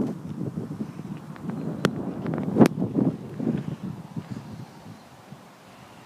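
Low rumble of a class 43 InterCity 125 high-speed train dying away after it has passed the crossing, with wind on the microphone and a few sharp clicks about two and two-and-a-half seconds in.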